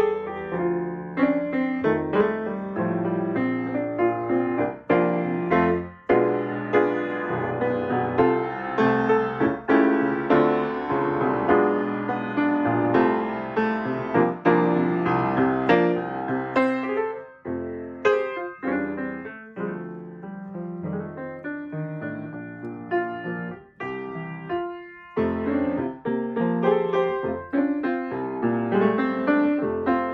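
A 1979 Steinway Model M grand piano played solo: a flowing passage of many struck notes and chords, with a short break about five seconds before the end. The action has just been refurbished and regulated, its troublesome Teflon bushings replaced with felt.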